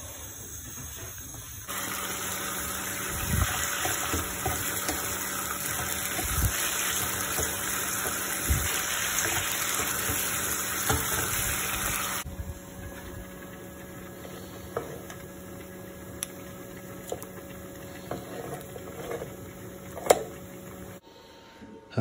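Bacon frying in a pan on a gas hob, a loud, steady sizzle with a few knocks of a utensil. About halfway through it drops abruptly to a much quieter hiss.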